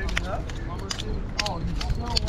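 Faint voices of people talking nearby, over a steady low rumble, with a few light clicks.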